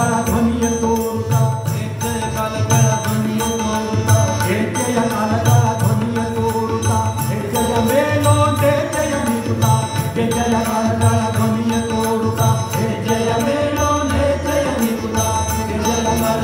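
Live Indian devotional song: a male voice singing drawn-out melodic lines over the steady drone of two tanpuras, with harmonium and a hand drum keeping a regular beat.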